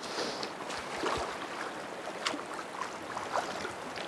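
Fast, shallow water of a small creek running steadily over gravel, with a few faint splashes and a light knock from the water and landing net.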